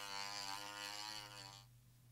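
Rotary tool fitted with a sanding drum running with a steady whine, slightly wavering in pitch, as it grinds away plastic filler inside a quadcopter arm; the whine stops shortly before the end.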